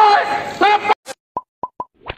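A man's voice over a public-address loudspeaker cuts off abruptly about a second in. A click and three quick popping blips follow: sound effects of an animated end screen.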